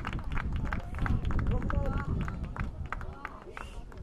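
Live sound from a football pitch: players' voices shouting and calling to each other, with many short sharp knocks over a steady low rumble.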